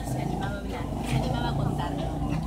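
People talking in a crowd, over a low steady rumble.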